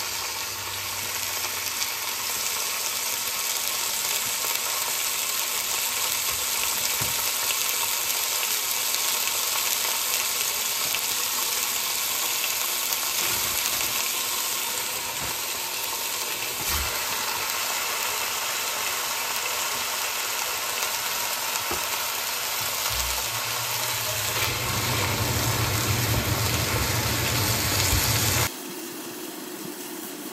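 Ground beef sizzling steadily as it browns in a hot enameled Dutch oven, with a low rumble building near the end.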